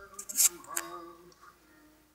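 A pause in a man's speech: a short breathy hiss in the first half-second, a faint murmur, then quiet room tone with a faint steady hum.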